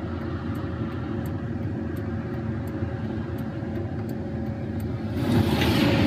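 Steady low rumble of a car, heard from inside the cabin, with a faint steady hum. The noise grows louder about five seconds in.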